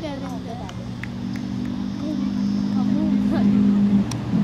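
A low, steady motor hum that grows louder over the last couple of seconds, under children's chatter.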